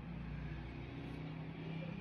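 A faint, steady low hum, with no strokes or clicks standing out.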